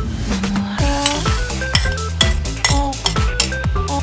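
Metal spoon stirring and scraping diced pork offal frying in a metal wok, with sizzling and clinks of spoon on pan. Background music with a steady beat plays throughout.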